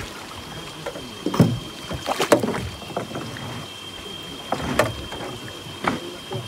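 Hooked silver croaker splashing and thrashing at the water's surface beside a small aluminium boat as it is reeled in and netted: several sharp splashes and knocks, the loudest about a second and a half and two seconds in, another near the end.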